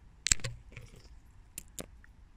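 A few short, sharp clicks: a loud one about a quarter of a second in, a fainter one just after, and two more close together near the end.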